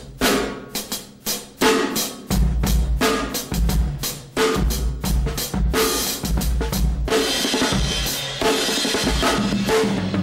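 Drum kit playing a slow reggae beat: deep bass drum and sharp snare or rim strokes landing at an even pace with cymbal strokes above. From about seven seconds in, the cymbal playing thickens into a steady wash.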